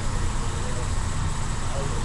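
Steady low rumble of background noise with a faint hiss above it.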